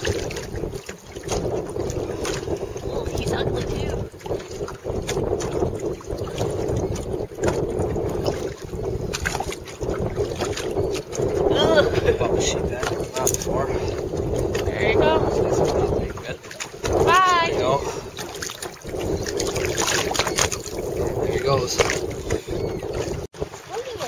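Steady wind and water noise on a small boat in choppy water, with brief indistinct voices now and then.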